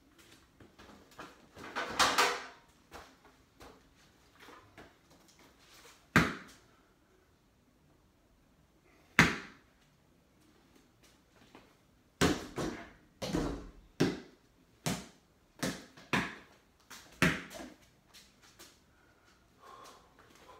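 Rubber balls thrown at a small wall-mounted hoop, thudding against the backboard and cabinets and bouncing on the floor: a few separate sharp thumps, then a quicker run of them, roughly one or two a second, near the end.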